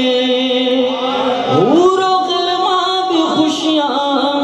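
A male naat reciter singing unaccompanied over a PA system. He holds a long note, then slides upward about halfway through into a new held note.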